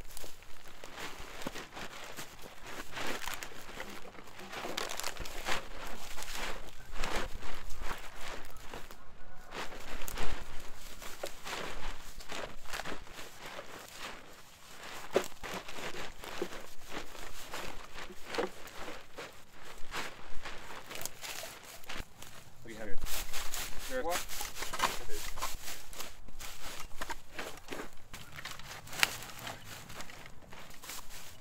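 Dry leaves and brush crunching and rustling in quick irregular bursts as debris is pulled and raked off a buried concrete sidewalk, with the crinkle of a plastic trash bag and footsteps in the dry litter.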